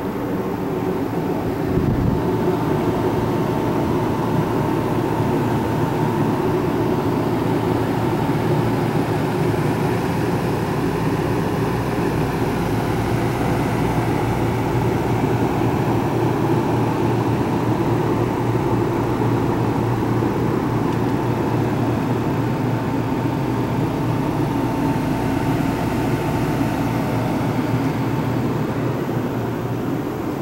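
A loud, steady mechanical hum with a thin steady whine on top, heard from inside a large motorhome. It gets a little louder about two seconds in.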